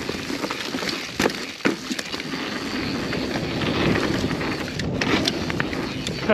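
Mountain bike riding fast down a dirt trail: a steady rush of tyre and wind noise, broken by sharp knocks and rattles as the bike hits bumps, the two loudest about a second in and half a second later.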